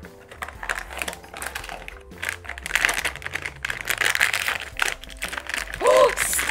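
Paper and foil packaging handled by hand: light clicks and rustles of the cardboard box flaps being opened, then louder crinkling of the foil blind bag from about two seconds in as it is pulled out and torn open.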